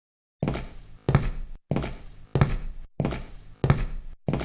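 Dance club-mix drum beat starting after a brief silence: heavy kick-and-snare hits, about one every two-thirds of a second, with no melody or vocal yet.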